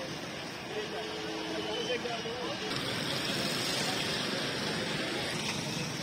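Busy street background: a steady wash of traffic noise with people's voices talking nearby.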